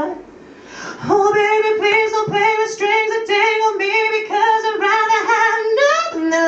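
A male singer's high voice singing a string of short repeated notes on one pitch, about three a second, after a brief pause at the start; the pitch jumps up at the end.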